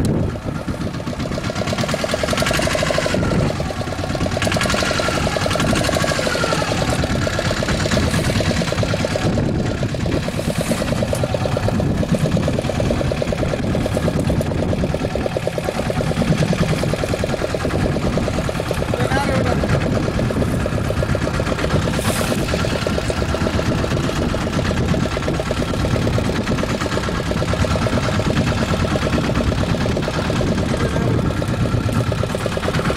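Small fishing boat's engine running steadily with an even rhythm, over a constant rush of wind and sea.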